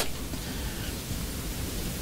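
Steady hiss with an uneven low rumble underneath, even and without distinct events: the background noise of the room and sound system.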